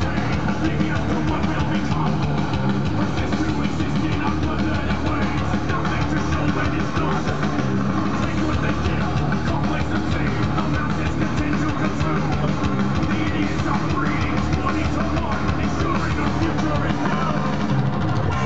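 Live heavy metal: distorted electric guitar playing fast picked riffs over drums, steady and loud with no breaks.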